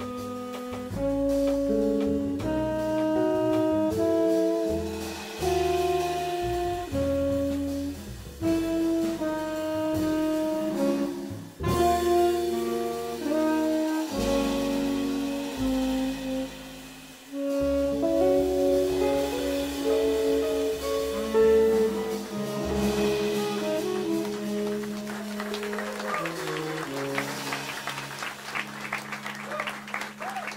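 Live jazz quartet of tenor saxophone, electric guitar, upright bass and drums playing the last bars of a tune. It settles onto a held final chord, and audience applause starts near the end.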